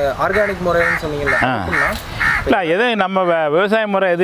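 A man speaking, with short bird calls repeating about every half second in the background over the first two and a half seconds.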